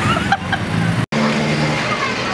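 Street traffic noise with brief voices. It cuts off suddenly about a second in and gives way to a steady low hum.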